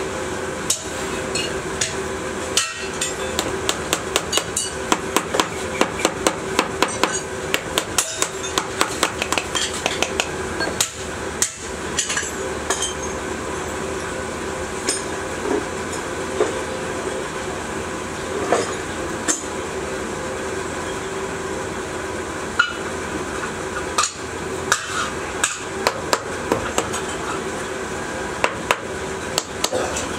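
Quick, light metallic taps from a small hand tool working a sand-casting mould and its flask, several taps a second in runs, with a pause mid-way. A steady hum runs underneath.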